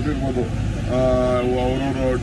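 A man's voice speaking, holding one long drawn-out vowel about a second in, over a steady low rumble of outdoor background noise.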